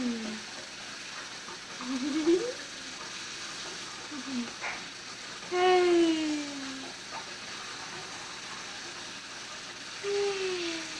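Kitchen faucet running a steady stream into a stainless steel sink, heard as an even hiss. Over it, a high voice coos a few drawn-out notes that mostly slide down in pitch, the longest about halfway through.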